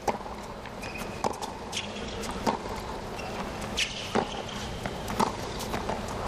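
Tennis rally on a hard court: the ball struck by racquets about five times, one to one and a half seconds apart, with short high squeaks of shoes on the court over a steady crowd murmur.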